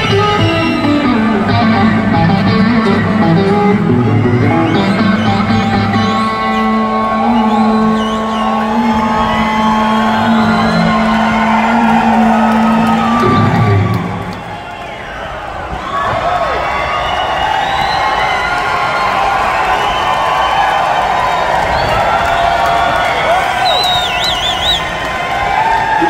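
Live electric guitar with the band playing a slow, heavy blues-rock riff that stops suddenly about fourteen seconds in, after which a large concert crowd cheers and shouts.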